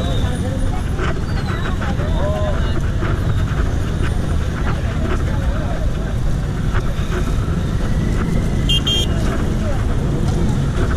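Busy city street traffic with a heavy low rumble of wind and handling on a body-worn microphone, and scattered voices. A vehicle horn gives two short beeps about a second before the end.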